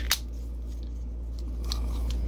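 A sharp click or two at the start as a roll of yellow gas-line thread tape and tools in a plastic tool box are handled, then a few faint small clicks near the end, over a steady low hum.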